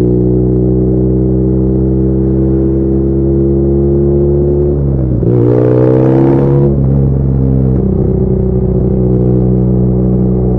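BMW R nineT's boxer-twin engine, fitted with aftermarket headers and the exhaust flapper valve deleted, running under way with its pitch slowly rising. About five seconds in the revs dip and then jump higher with a louder, rougher throttle burst for about a second and a half before settling back down.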